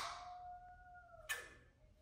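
Sharp plastic clicks from a continuous glucose monitor applicator being handled: one at the start, which dies away, and another about a second and a half in. Between them a faint, thin, high whine lasts about a second and dips in pitch just before the second click.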